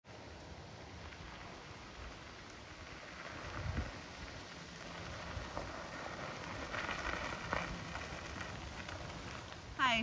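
Fat tyres of an e-bike rolling over a gravel driveway, a steady noisy crunch that grows louder as the bike approaches.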